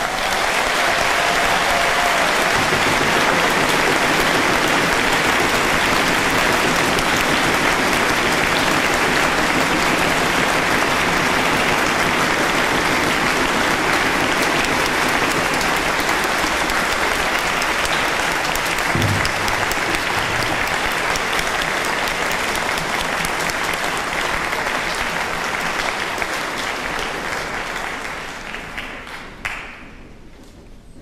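Large concert-hall audience applauding, a long steady clapping that dies away near the end.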